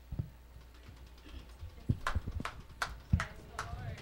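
Handling noise from a handheld microphone being passed between hands: a series of irregular knocks and thumps, with faint voices underneath.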